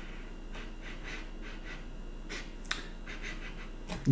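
A man sniffing several times at a bottle held to his nose: short, faint sniffs, with a light click partway through.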